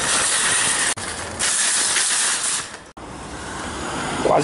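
A steady, even hiss of outdoor noise, broken by sudden cuts about a second in and again near three seconds.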